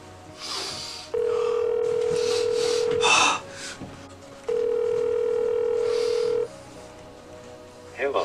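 Telephone ringback tone on a call: two steady rings of about two seconds each with a short gap, the sign that the called phone is ringing unanswered.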